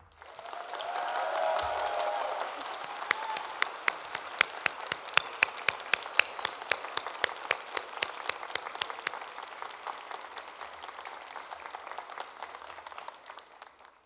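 An audience applauding, with some voices cheering in the first couple of seconds. From about three seconds in, loud, sharp single claps close to the microphone stand out over the crowd. The applause thins out and dies away near the end.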